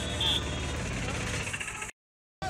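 Street noise: a vehicle engine running steadily, with indistinct voices over it. It cuts off abruptly near the end.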